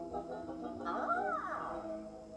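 A cartoon ghost's wordless voice: one cry that rises and then falls in pitch, about a second in, over steady background music.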